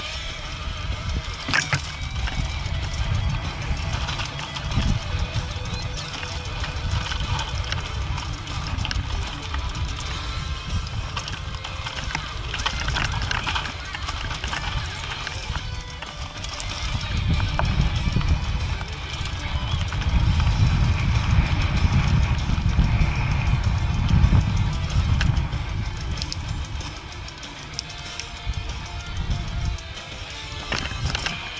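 Mountain bike riding down a dry dirt and rock trail, heard through an action camera: wind buffeting the microphone, with tyres crunching and the bike rattling over rough ground, louder in the second half. Music plays underneath.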